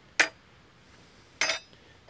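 Metal beekeeping hive tools clinking as they are laid down on the hive's top bars: one sharp clink just after the start and a second, briefly ringing clink about a second and a half in.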